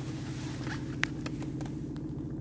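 Steady low hum of the BMW 218d's four-cylinder turbodiesel idling, heard from inside the cabin, with a few small handling clicks, one sharper about a second in.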